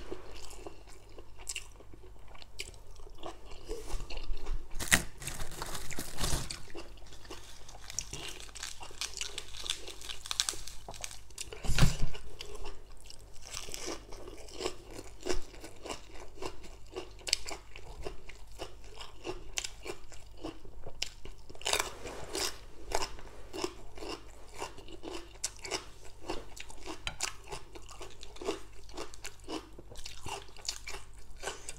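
A person chewing and crunching mouthfuls of spicy papaya salad with rice noodles and raw greens, in irregular crunches throughout. There is a louder thump about twelve seconds in.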